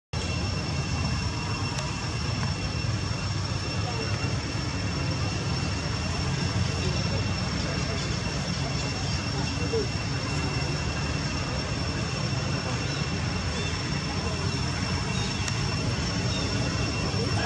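Steady outdoor background noise: a continuous low rumble with a faint, unchanging high-pitched whine above it.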